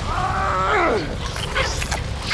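A man's strained cry of pain, held for about a second and then falling away in pitch, followed by sharp crackling effects of the body breaking apart.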